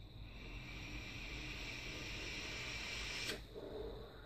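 A vape mod firing a rebuildable atomizer's exposed coil: a steady sizzling hiss lasting about three seconds, which cuts off suddenly.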